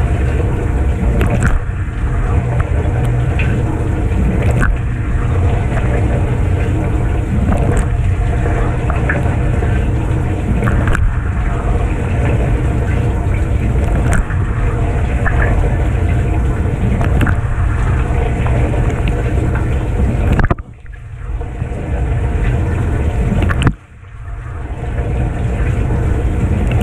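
Kenmore dishwasher in its wash phase, heard from inside the tub: the wash pump runs with a steady low hum while the bottom spray arm sprays water against the dishes and racks, with scattered small ticks of water hitting. The sound drops out sharply twice near the end and builds back up each time.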